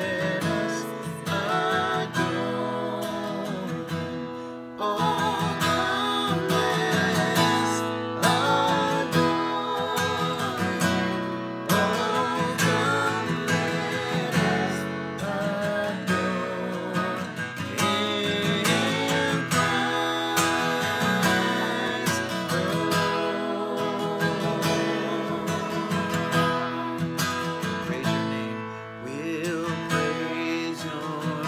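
Acoustic guitar strummed as accompaniment while a man and two women sing a worship song together.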